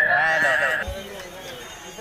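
Handheld karaoke microphone's built-in speaker playing back a wavering, echoing voice over a steady high feedback whistle; both cut off abruptly just under a second in, leaving quieter background noise.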